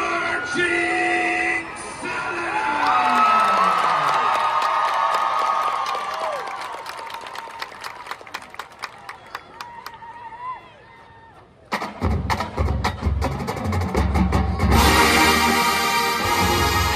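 Stadium crowd cheering and clapping after the countdown, fading as it dies down. About twelve seconds in, a large marching band comes in with strong low drum and brass hits, then swells to full band near the end.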